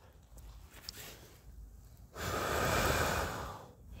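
A person blowing one long breath onto the embers of a small dying fire to revive it. The breath starts about two seconds in and lasts about a second and a half.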